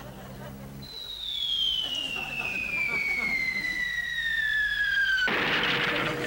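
Falling-bomb whistle sound effect: one long whistle gliding steadily down in pitch, cut off about five seconds in by a sudden noisy blast, the bomb going off.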